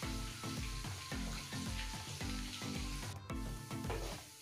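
Pieces of seer fish sizzling in hot oil and masala in a pan as they are stirred with a wooden spatula, over background music with a steady repeating beat.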